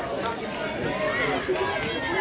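Indistinct shouts and calls from players and spectators at an outdoor football match, with low crowd chatter.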